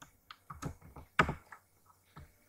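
Typing on a computer keyboard: a handful of separate keystrokes at an uneven pace, the loudest a little past halfway.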